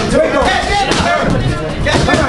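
Several voices shouting and talking around a boxing ring, with a sharp knock about a second in.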